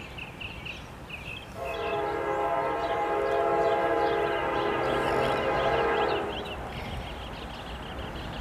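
Horn of a CSX GE AC44CW diesel locomotive sounding one long blast of several steady tones, starting about a second and a half in and lasting about four and a half seconds, as the freight train approaches.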